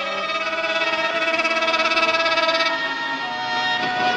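Orchestral film-score music with long held notes, moving to a new chord a little after three seconds in.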